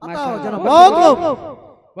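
A man's voice singing a drawn-out, wavering melodic phrase of a naat, unaccompanied, dying away about one and a half seconds in.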